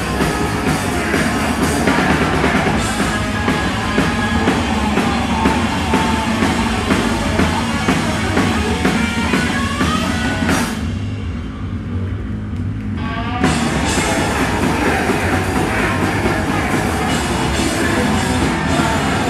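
Live hardcore punk band playing loud and fast: distorted electric guitar, bass and a drum kit with cymbals. About eleven seconds in, the cymbals and high end drop out for roughly three seconds, then the full band comes back in.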